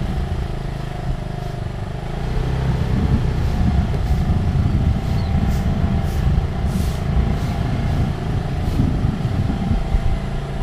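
A small motor vehicle's engine runs steadily while riding along a road. Wind rumbles heavily on the microphone throughout.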